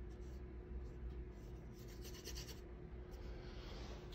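Faint scratchy strokes of a paintbrush laying oil paint onto a canvas, a few short passes with pauses between.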